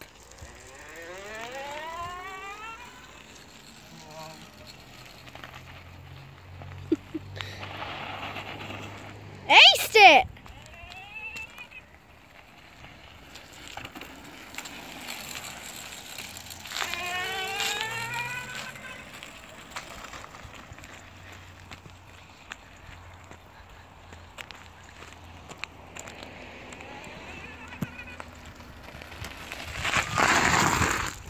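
Electric motors of a homemade two-wheel-drive e-bike, a front hub motor and a chain-drive motor, whining as the bike pulls away, the pitch rising with speed. The rising whine comes again about seventeen seconds in, and there is a brief loud noise about ten seconds in.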